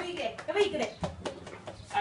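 People talking, with a few faint knocks among the voices.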